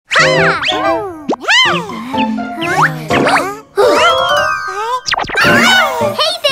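Children's music jingle full of cartoon sound effects: many quick up-and-down sliding pitch glides over bright sustained tones, starting suddenly out of silence.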